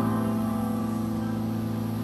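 A sustained chord from a live concert band, held steady and slowly fading away.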